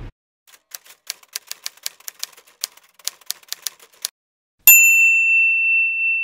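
Typewriter sound effect: a quick run of key strikes for about three and a half seconds, then after a short pause a single bell ding that rings on for more than a second, like a typewriter's carriage-return bell.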